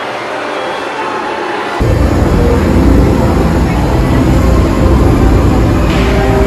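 Loud, rumbling hiss of steam venting from a stationary replica steam locomotive, starting abruptly about two seconds in.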